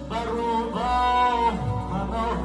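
A man singing through a microphone and PA with instrumental accompaniment, holding one long note in the middle.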